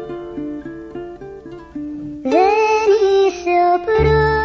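A sampled music recording playing back: a run of short plucked notes, then about two seconds in a louder, fuller passage enters with a lead line that glides up and wavers on a held note.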